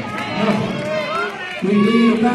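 A man's voice preaching through a microphone and PA in a hall, with a long held note coming in about a second and a half in.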